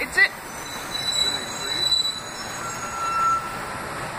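Street background with a few thin, high-pitched squeals, each held for about a second: metal-on-metal squealing from distant traffic, such as rail wheels or brakes. A short, loud chirp-like sound comes right at the start.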